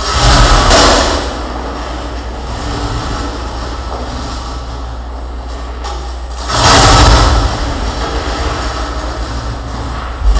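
Harsh noise performance: a dense, continuous wall of amplified contact-microphone noise from objects such as chains and sheet metal. It surges louder twice, right at the start and again about two-thirds of the way through, each surge lasting about a second.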